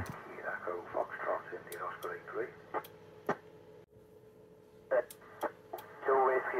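Faint, unintelligible voices from the ISS FM repeater downlink heard through an amateur radio receiver, crowded by other stations transmitting at once, with sharp clicks and pops as the FM signal breaks up. The signal drops out briefly near the middle, then a few clicks return.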